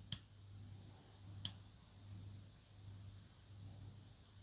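Faint clicks from a small tactile push button on a cordless tool battery's LED circuit board being pressed and wiggled by a thumb. The button is dirty inside, which makes the charge-level LEDs cut in and out.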